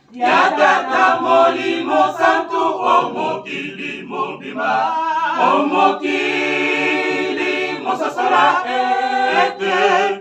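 Small mixed choir of men's and women's voices singing a cappella, several voices together in a chant-like song without instruments.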